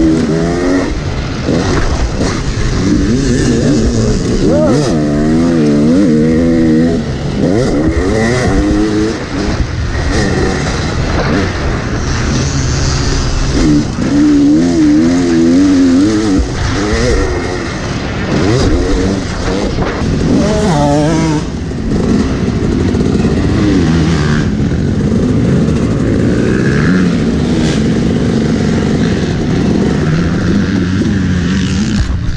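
Yamaha YZ250 two-stroke single-cylinder dirt bike engine, ridden hard, its revs rising and falling over and over as the rider throttles up and backs off. Near the end the revs come down and steady as the bike slows to a stop.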